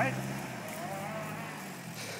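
Toyota Land Cruiser Prado engine revving up and holding a steady drone as the 4x4 moves off over rough dirt ground, easing off slightly toward the end.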